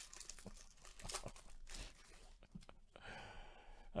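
Foil trading-card pack wrapper being torn open and crinkled by hand: faint, irregular crackling and rustling.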